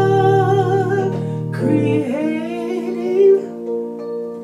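A worship song with a voice singing long held notes over sustained instrumental chords. The chord changes about halfway through.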